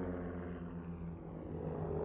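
Propeller airplane engine droning steadily in flight, dipping a little in loudness midway and swelling again near the end.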